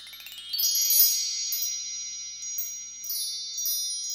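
A shimmering chime sound effect. A quick rising run of high, bell-like tones begins about half a second in, then a cluster of high ringing tones is held, with small sparkles on top.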